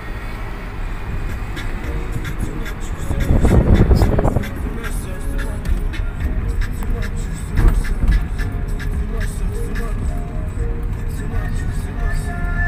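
Engine and road noise inside a moving car, with music playing underneath. There is a louder rumble for a second or so about three seconds in, and a brief thump a little before eight seconds.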